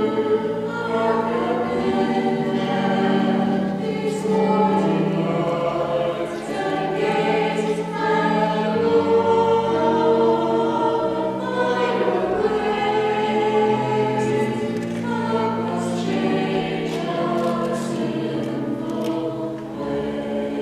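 Many voices singing together in church, a slow sacred song with long held notes.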